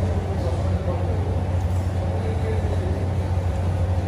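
A steady low hum fills the room without a break, with faint voices behind it.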